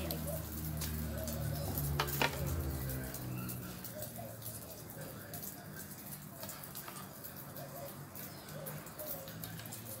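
Birds calling, with faint sizzling and crackling from food frying in a pan on the fire. A low hum fades out in the first few seconds, and two sharp knocks sound about two seconds in.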